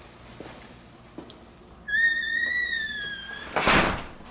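A six-panel door between the garage and the house squeaking on its hinges for about a second and a half as it swings, then shutting with a loud thump near the end.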